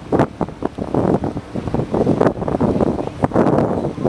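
Wind buffeting the camcorder's microphone in uneven gusts.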